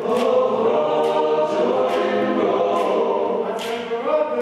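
Male a cappella choir singing a spiritual in sustained close harmony, the chord swelling louder at the start, with a crisp high tick about once a second marking the beat.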